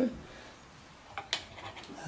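A few light clicks and knocks from the wooden flyer and bobbin of a spinning wheel being handled, the sharpest just past a second in.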